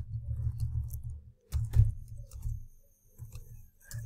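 Computer keyboard typing: a few separate keystroke clicks, the sharpest about a second and a half in and just before the end, over a low background hum.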